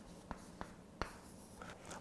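Chalk being written on a blackboard: faint scratching broken by several sharp taps as strokes start, the strongest about a second in.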